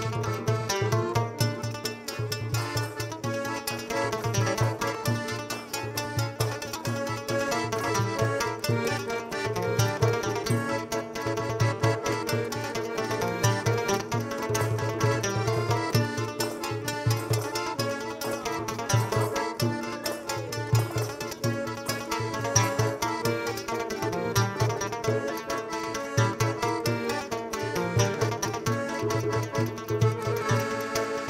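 Traditional Malay music from Brunei: a plucked lute with hand-held frame drums keeping a steady, even beat.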